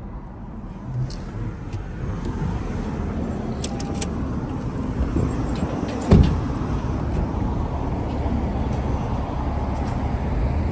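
Steady low rumble of a car, with a few light clicks about four seconds in and a single loud thud about six seconds in.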